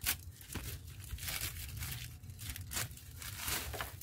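Thin plastic polybag crinkling and tearing in a run of irregular rustles and crackles as it is pulled off a nursery plant's root ball, with loose potting soil shifting.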